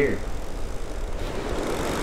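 Steady surf and wind noise on the microphone, with a surf-fishing reel's clicker ratcheting as line is pulled off while a shark bait is run out by kayak.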